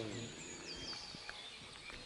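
Faint open-air ambience with small birds calling: thin high chirps and a short falling whistle about a second in, and a faint low voice-like sound fading out at the very start.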